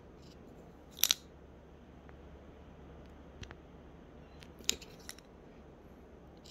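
Small clicks and scratchy ticks from a paint-marker nib dabbing along the rough edge of a hard resin coaster held in the hand: one sharp double click about a second in, then a few fainter ticks later, over a faint low hum.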